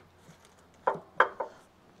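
Two short, light knocks about a third of a second apart, against a quiet background.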